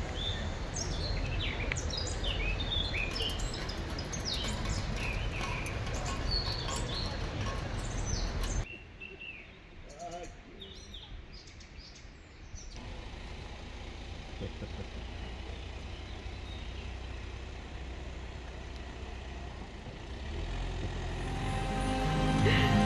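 Small birds chirping and singing over a low outdoor rumble, busy for the first eight or nine seconds; then the sound cuts abruptly to a quieter stretch with only a few chirps. Near the end a car approaches along the road, growing louder.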